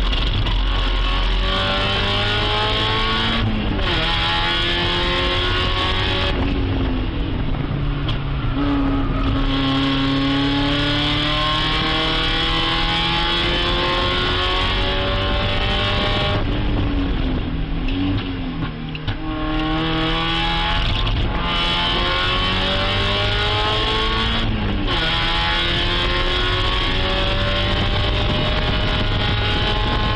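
Race car engine heard from inside the cockpit at full throttle, its pitch climbing in long sweeps and dropping sharply several times as the driver shifts gears and lifts.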